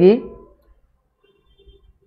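A man's voice ends a word at the start, then near silence with a few faint clicks.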